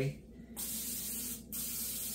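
Aerosol can of nonstick cooking spray hissing as it coats the inside of a mixing bowl: one spray of about a second, a short break, then a second spray that keeps going.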